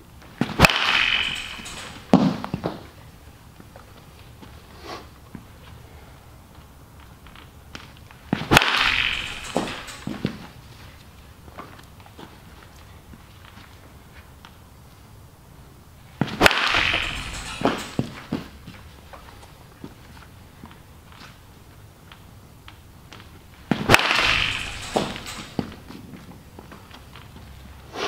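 Four swings of a 2017 DeMarini CF Zen Balanced two-piece composite BBCOR bat hitting a baseball off a tee, about eight seconds apart. Each is a sharp crack with about a second of noise after it.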